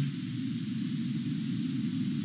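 Steady hiss of background noise with a low rumble beneath it and no distinct event.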